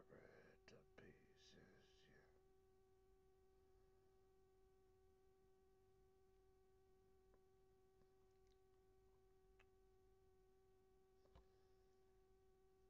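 Near silence: a faint steady tone with a few overtones runs underneath, with faint murmured speech in the first two seconds and a few soft clicks later on.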